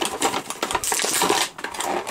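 A clear plastic bag crinkling and rustling in the hands, with many light clicks of small plastic toy accessories knocking together inside it.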